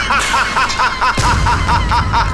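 Rapid, high-pitched cackling laughter, a quick string of short 'ha' pulses about five or six a second, over background film music.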